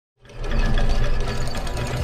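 Gear-mechanism sound effect for an animated intro: rapid mechanical clattering over a deep low rumble, starting abruptly just after the start.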